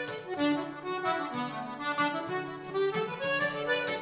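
Accordion playing a traditional tune over a steady rhythmic beat.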